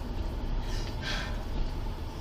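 Steady low rumble of a patrol car's cabin as it rolls slowly along, with one short breathy hiss about a second in.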